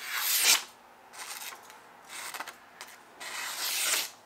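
Sharp steel Bowie knife blade slicing through a held sheet of paper in four strokes, each a brief papery hiss, the first and last loudest. It is a paper test of the edge, which cuts cleanly.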